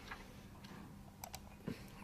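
Quiet room tone with a faint steady low hum, broken by a few small clicks about a second and a quarter in and a soft thump near the end.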